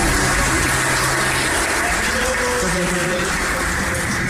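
Shoegaze band playing a dense, noisy wash of distorted sound, with sustained droning notes held beneath a hiss-like haze.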